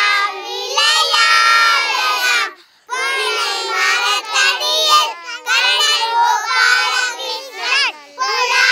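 A group of young children singing together in unison in high voices, in phrases with short breaks.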